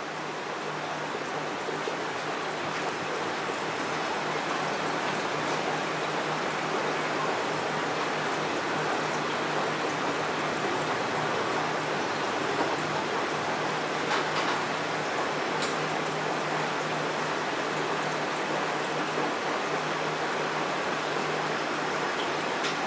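Steady rushing and trickling of water from a reef aquarium's circulation, over a constant low hum. A couple of faint clicks sound about halfway through.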